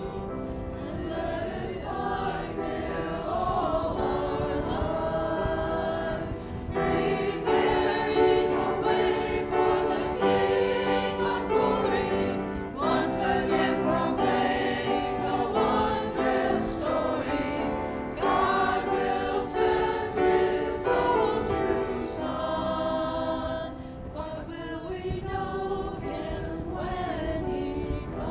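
Small church choir singing an anthem. The voices swell and fall back, with a softer passage near the end.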